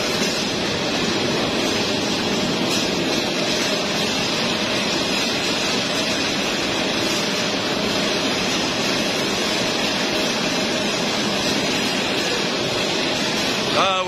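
Steady, loud machinery noise of a running poultry processing line: an even rushing with a faint constant hum, unchanging throughout.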